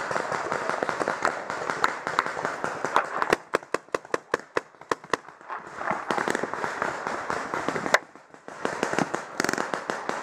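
Paintball markers firing: sharp pops in quick strings, densest and most separated in a run of several shots a second from about three seconds in to past five seconds, with clattering shots around it.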